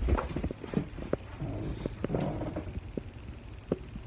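Handling noise from a phone being moved around: a low rumbling with scattered small clicks and knocks, and a faint murmur about two seconds in.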